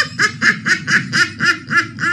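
A woman laughing hard in a fast run of high-pitched bursts, about four or five a second.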